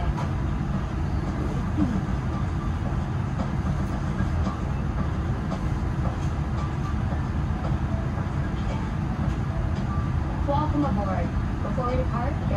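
Steady low rumble inside a Boeing 787-9 airliner cabin, the air-conditioning and aircraft systems running, with a faint voice near the end.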